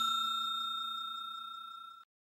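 The ring of a bell-chime sound effect from a subscribe and notification-bell animation: one ding fading steadily, then cut off at the end.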